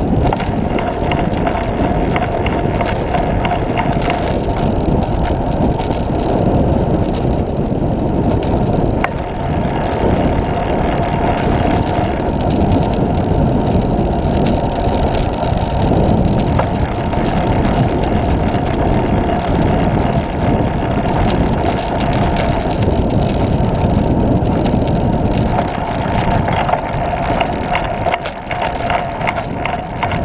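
Steady rushing noise of a Catrike 700 recumbent trike riding at speed on pavement: wind on the microphone and tyre noise on the road, with a faint steady hum.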